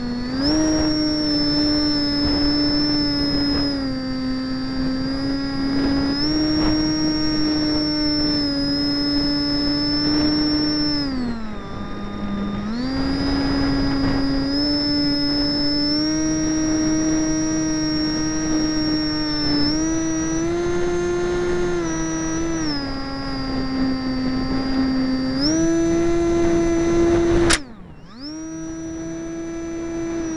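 Motor and propeller of a radio-controlled model flying boat, recorded onboard in flight: a steady pitched drone with a high whine above it, stepping up and down in pitch as the throttle changes. The pitch sags and recovers about 11 seconds in; about 27 seconds in the power cuts off suddenly, the pitch falls away, then rises again.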